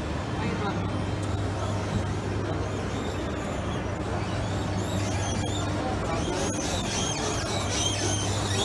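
Indistinct voices of people in a large concourse over a steady low mechanical hum from a moving escalator; the voices grow a little clearer near the end.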